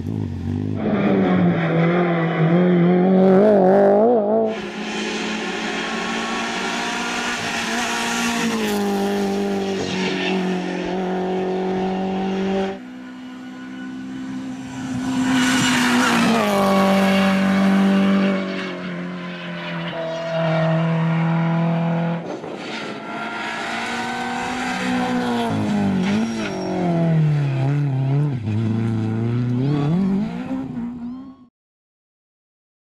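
Renault Clio rally car engine revving hard at racing speed, its pitch repeatedly climbing and dropping as it shifts gear and brakes for corners. The sound changes abruptly a few times as one pass gives way to another.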